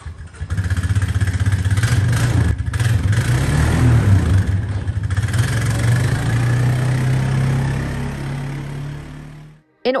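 Four-wheeler ATV engine running as it pulls a drag through the arena sand. The engine note is steady, then fades over the last few seconds and cuts off suddenly.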